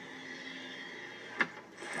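Faint steady road hum inside a moving car's cabin, with one short tick about a second and a half in and a rush of noise swelling near the end.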